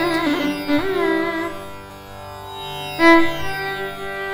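Carnatic instrumental passage: a veena and a violin play a melody full of sliding, ornamented notes over a steady drone, with a sharp plucked note about three seconds in.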